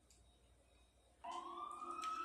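Near silence for about a second, then a siren starts up again, its single wailing tone rising slowly in pitch.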